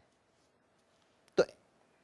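Near silence, broken about one and a half seconds in by a man saying one short word, "to" ("so").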